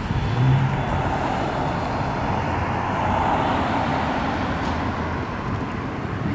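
Steady road and engine noise of a car driving, with a louder low hum in the first second.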